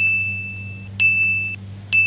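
Three bright, high-pitched electronic ding sound effects: one just ringing at the start, another about a second in and a third near the end. Each is a single clear tone that fades out within about half a second, over a steady low hum.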